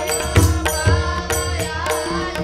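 Devotional bhajan music: a boy's solo voice singing a wavering melodic line over regular hand-drum strokes, with steady held tones underneath.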